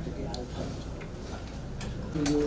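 Meeting-room ambience: a steady low hum with faint background voices and a few soft clicks.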